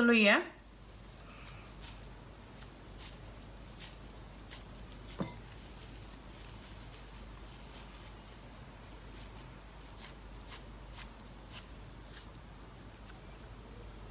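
Hands squeezing and kneading a soft tuna kebab mixture in a glass bowl: faint, quiet handling noise with scattered light ticks, and one sharper click about five seconds in.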